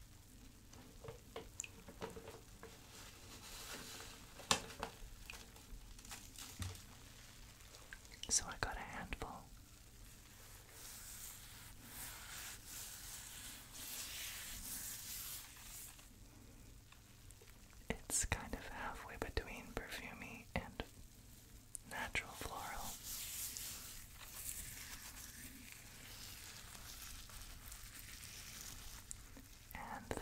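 Bath salt crystals rubbed and rolled between fingers close to the microphone: a soft, fine granular hiss that swells and fades in long stretches, with small clicks.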